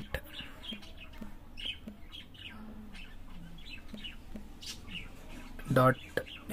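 Faint birds chirping in the background, short scattered calls over a low steady room noise.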